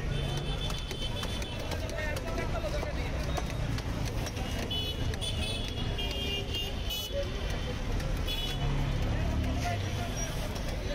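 Busy street-market ambience: a steady traffic rumble with high vehicle-horn tones sounding on and off, background voices, and a few sharp knocks.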